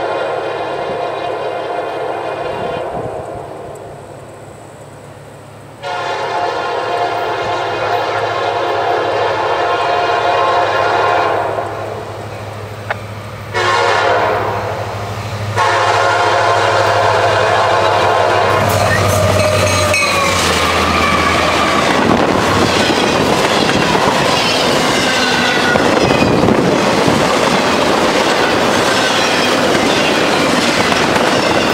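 A CSX SD70MAC diesel locomotive sounds its air horn in several blasts for the grade crossing as it approaches. The last blast is held and drops in pitch as the locomotive goes by, with its diesel engine rumbling. Then comes the loud, steady rushing and clatter of intermodal trailer and container cars passing at speed.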